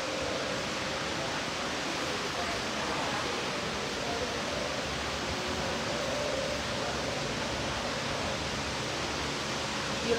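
Steady rushing noise of electric fans moving air in the room, unchanging throughout.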